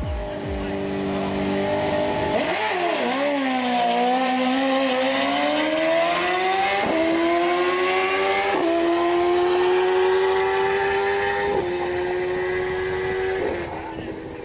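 BMW S1000RR sportbike's inline-four held at high revs on the line, dipping as it launches, then climbing in pitch through several gear shifts on a drag-strip pass, fading toward the end.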